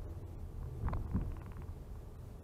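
Low, steady road and engine rumble inside a Haval H6 SUV's cabin, with a short bump about a second in as the wheels roll over a brick.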